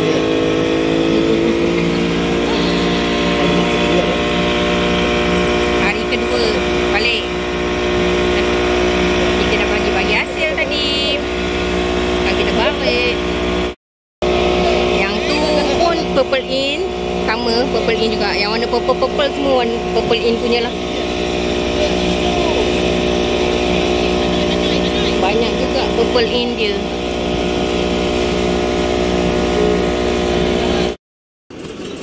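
A small boat's engine running at speed under way, its pitch rising over the first couple of seconds as it picks up speed, with the rush of water and wind along the hull. The sound cuts out briefly about halfway through.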